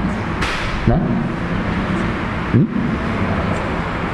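Steady rushing background noise with a low hum under it, and a short hiss about half a second in. A man briefly murmurs "nah" and "hmm".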